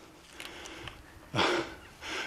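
A man's single short, breathy exhale about a second and a half in; otherwise quiet.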